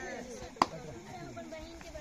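One sharp smack about half a second in, the loudest thing here, over faint voices.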